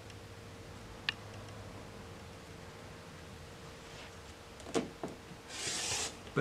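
Rotary cutter slicing through quilting cotton along an acrylic ruler on a cutting mat, a short rasping cut near the end. Before it come a faint click and two light knocks.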